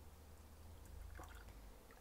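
Very faint pouring and trickling of cherry juice from a saucepan into a liquid measuring cup, barely above near silence, over a steady low hum.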